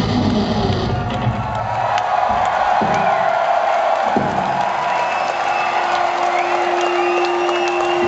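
A live rock band ends the song about two seconds in, and a large crowd cheers, shouts and whistles. Two single drum hits ring out in the middle, and a steady held note from the stage sounds over the cheering from about halfway.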